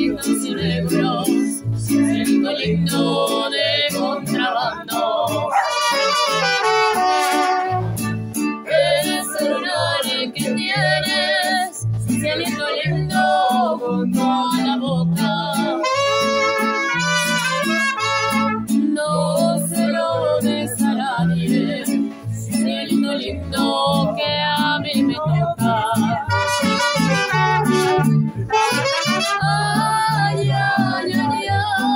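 Mariachi band playing live: saxophone and trumpet carry the melody over strummed guitars and a steady, rhythmic bass line from the guitarrón.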